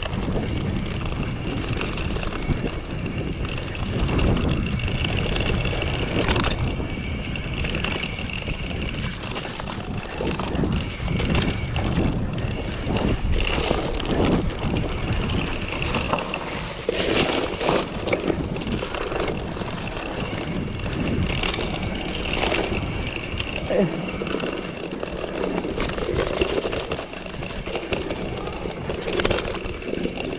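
Mountain bike riding over a rough clay-and-rock forest trail: tyres rolling with constant rattling and clatter from the bike, many short knocks as it hits bumps, over a low rumble.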